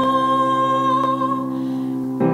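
A solo singer holds one long note over a sustained grand piano chord, the sound thinning out near the end.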